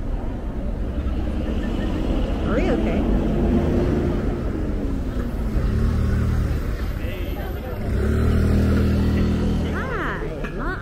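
City street traffic: cars passing close by with engine and tyre noise. A deeper engine drone rises about halfway through and again near the end as heavier vehicles go by.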